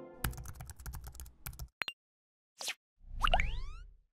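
Logo-animation sound effects: a quick run of keyboard-typing clicks, two more clicks, a short whoosh, then a rising chime over a low thud.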